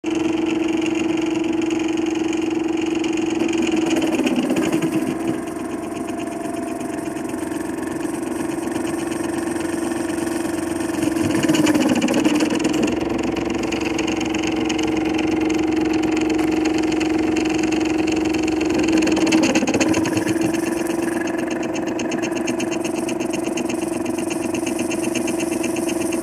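MakerFarm Prusa i3 3D printer running a print: its stepper motors whir as the print head and bed move, with a steady hum throughout. The motor pitch sweeps up and down three times.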